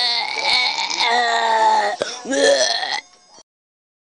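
A man's voice making drawn-out, strained retching and vomiting sounds: one long heave, a brief break about two seconds in, then a second, shorter heave that cuts off about a second later.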